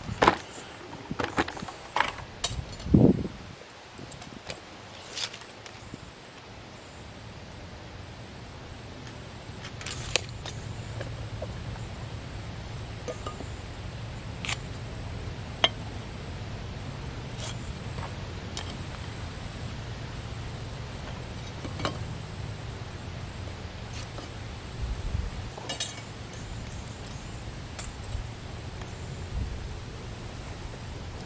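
Knocks and rustles of the camera being handled and set down in the first few seconds, then scattered light clicks and taps of a metal speed square and pencil against a wooden fence post as its top is marked for cutting, over a steady low outdoor background.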